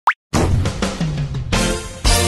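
A short rising pop sound effect, then animated-intro music with a run of drum hits and a falling tone.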